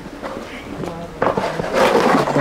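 A steel shovel scraping through cement mortar in a metal trough: a single rough scrape starts a little past halfway and is the loudest sound, with voices murmuring around it.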